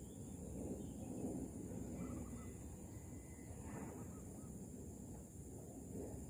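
Faint bird calls: a thin, even tone about two seconds in and a short, harsher call near four seconds, over a low background rumble and a steady high hiss.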